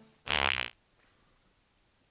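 A single loud fart lasting about half a second, with a buzzy, rasping pitch.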